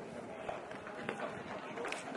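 Horse cantering on a sand arena: muffled hoofbeats, with a couple of sharper knocks about half a second and a second in.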